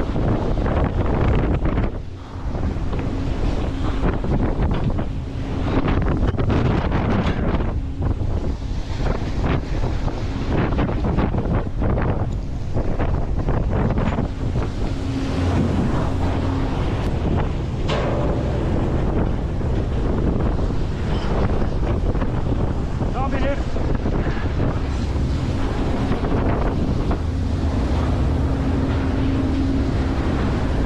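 Wind buffeting the microphone over rushing, breaking sea water beside a fishing boat in rough sea, with the boat's low rumble underneath. A low steady hum comes and goes at times.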